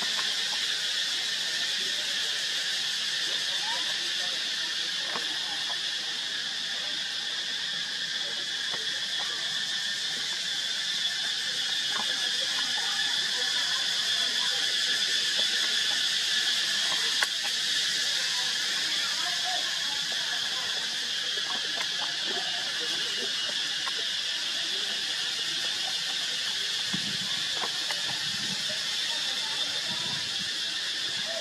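Steady high-pitched drone of a tropical insect chorus, with a few faint squeaks and small clicks coming and going over it.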